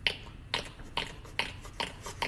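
Mouth pops made by tapping the cheek with the mouth held open: five sharp, hollow clicks at about two and a half a second, each at a slightly different pitch.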